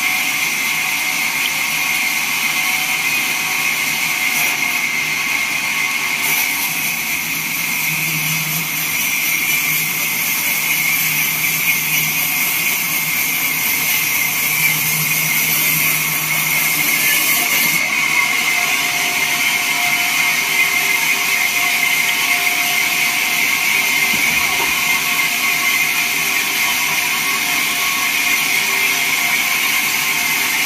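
Vertical band sawmill running and cutting through a wooden slab, a steady loud mechanical whine with a high hiss. The hiss grows stronger from about six seconds in and eases back about eighteen seconds in.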